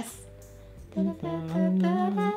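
A person humming a tune: after about a second of quiet, a few held, steady notes with small steps in pitch.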